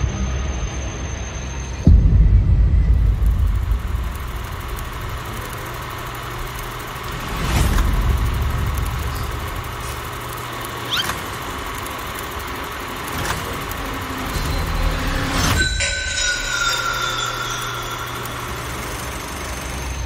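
Horror-film sound design: a low rumbling drone, broken by a sudden heavy hit about two seconds in and a swelling surge around the middle. Near the end a sharp stroke is followed by a high screech that falls slowly in pitch.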